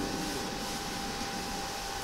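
Steady room background noise, an even hiss with a faint steady whine, in a short pause in speech.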